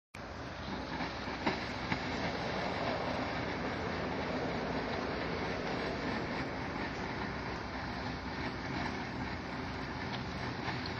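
Steady rushing hiss of steam and hot water venting from the outlet pipe of a downhole heater under test, with water as the heated medium. Two faint knocks sound about a second and a half in.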